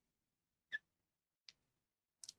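Near silence, with two faint short clicks about three quarters of a second apart.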